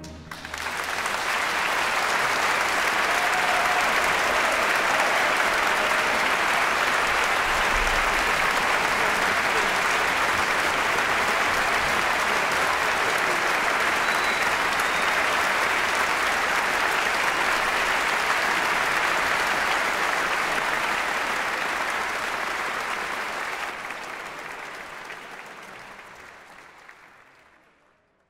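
A large audience applauding steadily, starting right after the orchestra's final chord and fading out over the last few seconds.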